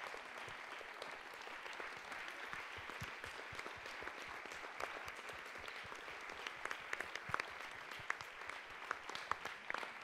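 Audience applauding steadily and fairly faintly, a dense patter of clapping, with a few sharper individual claps standing out in the second half.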